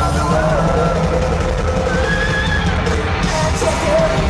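A live pop-punk band playing at full volume: electric guitars and drums, with a singing voice and yelling over them.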